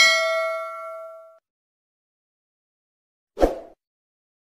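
A bright, bell-like chime sound effect struck once, ringing with several tones and fading out over about a second and a half. About three and a half seconds in comes one short, dull hit.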